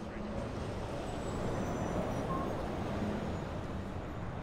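Street traffic noise: a steady rumble of passing cars.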